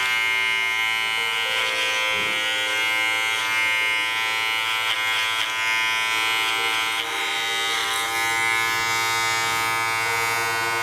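Electric hair clippers running with a steady buzz, cutting hair over a comb.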